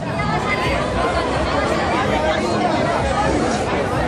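Steady hubbub of a large crowd of runners and spectators, many voices talking at once.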